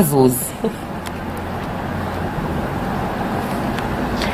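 A steady rushing background noise that grows slightly louder toward the end.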